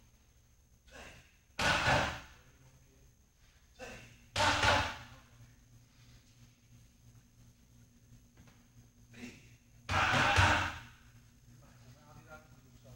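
Boxing gloves striking hand-held punch pads in three quick flurries spaced a few seconds apart, each flurry with a lighter hit just before it.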